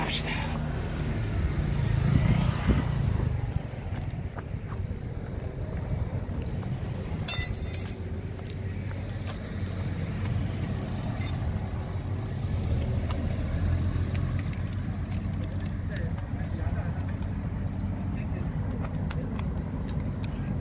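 Low, steady rumble of a running motor vehicle engine, with a short run of sharp metallic clicks a little past seven seconds in.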